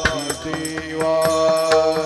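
Varkari bhajan chanting: male voices singing together and holding a long note, with small brass hand cymbals (taal) struck in rhythm.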